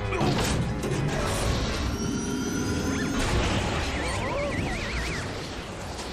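Cartoon sound effects over background music: a crashing clatter early on, then a warbling, wavering whistle-like tone about four seconds in.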